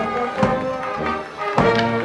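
Marching brass band of trombones, euphoniums and cornets playing a tune, sustained chords over a steady beat.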